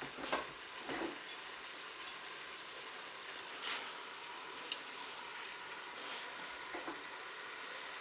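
Mussels and garlic sizzling steadily and faintly in hot oil in a Cookeo multicooker bowl set to browning, with a few short taps and rustles as spaghetti is pushed into the bowl by hand.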